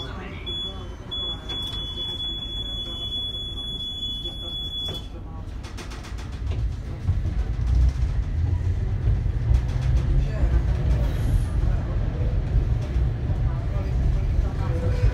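Tram door warning signal: a high beep, broken at first and then held steadily for about four seconds, cuts off sharply. About a second and a half later the tram pulls away, and the low rumble of its motors and wheels builds inside the car.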